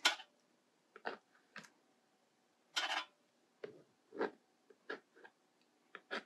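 Scattered light taps and scrapes of a card edge being pressed and dragged on wet watercolour paper, with one longer scrape about three seconds in.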